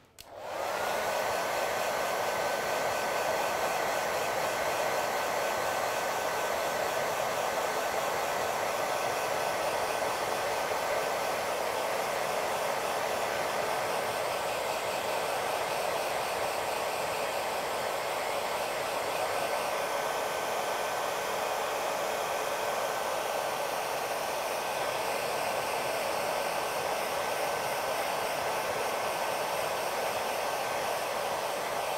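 Handheld hair dryer switched on, its whine rising as the motor spins up over about the first second, then running steadily, blowing on freshly applied paint to speed its drying.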